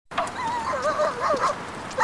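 A run of short, wavering, high-pitched animal cries, several in quick succession, that die away in the last half second.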